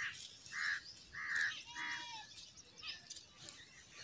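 A bird calling outdoors: a run of short, evenly spaced calls, about one every two-thirds of a second, that dies away after about two seconds.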